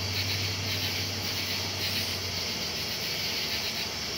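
Steady high-pitched hiss of night-time background noise, with a low hum underneath that stops about two and a half seconds in.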